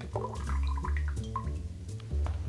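Liquid being poured into a glass mixing glass, with background music and its low, stepping bass line underneath.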